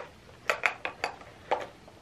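Makeup products (compacts, tubes and pencils) clicking and clinking against each other as they are handled and packed into a small makeup pouch: a handful of light knocks.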